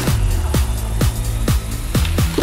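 Electronic background music with a steady kick drum beating about twice a second.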